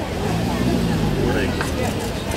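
A motor vehicle's engine running with a steady low hum, under the voices of a crowd.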